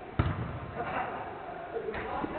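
A football struck once, giving a sharp thud just after the start, followed by players shouting.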